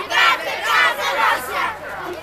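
A group of children shouting together, in short loud bursts about every half second.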